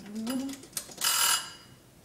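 A built-in oven's mechanical timer bell rings once, briefly, about a second in, as its knob is turned back to switch the oven off. A few faint knob clicks come just before it.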